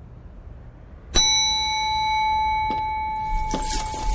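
A bell struck once about a second in, giving a single ding that keeps ringing as a steady tone with several overtones; a few knocks and rattles come in near the end.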